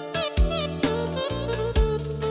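Manele music played on an electronic keyboard: a lead melody with quick pitch bends and wavering ornaments over a bass and drum beat.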